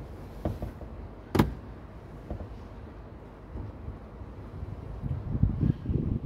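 Plastic trim hatch under a car's dashboard being handled and opened: one sharp plastic click about a second and a half in, a few lighter knocks, and low rubbing and rumbling near the end.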